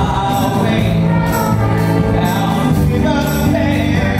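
A male voice singing a lively show tune over musical accompaniment, with a bright percussion hit about once a second.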